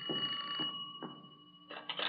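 Telephone bell sound effect ringing rapidly, stopping about half a second in. A short clatter follows near the end.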